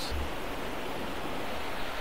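Steady rushing of a small creek's running water, an even hiss with no distinct splashes.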